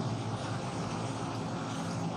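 A steady background hum with an even noise haze and no distinct events.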